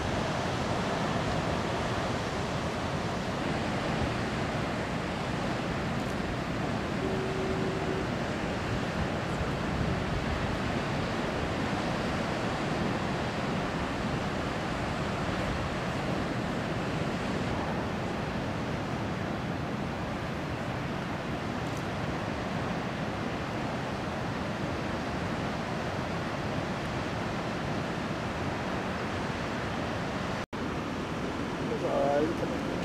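Steady rush of heavy ocean surf breaking, with no let-up. About seven seconds in, a short steady tone sounds for about a second.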